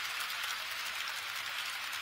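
HO-scale model trains running on KATO Unitrack close by: a steady rushing whir of small metal wheels rolling on the rails, with faint fine ticking.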